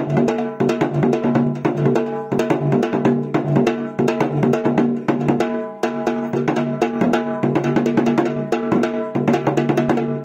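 A dhol, a double-headed barrel drum, played by hand in a fast dense rhythm of strokes over a steady sustained tone, with a brief break just before the middle.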